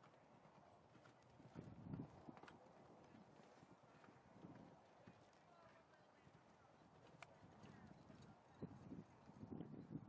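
Faint, dull hoofbeats of a pony cantering on sand arena footing. The thuds come in clusters and are loudest about two seconds in and again near the end.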